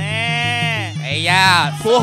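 Traditional ringside fight music: a high, wavering melody held in two long notes over a steady repeating drum rhythm, with a commentator's voice over it.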